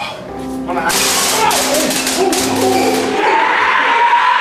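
Eerie music-like droning: a low steady hum and a held tone, broken in the middle by rapid bursts of hiss, with a person yelling near the end.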